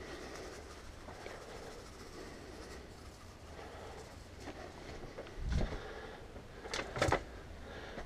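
Faint rustle of Epsom salt crystals scattered from a plastic scoop onto potting soil. Near the end come a low thump and two sharp knocks.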